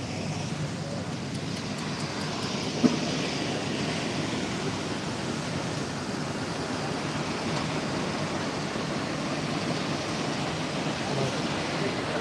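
Steady rushing background noise with a faint low murmur under it, and one sharp knock about three seconds in.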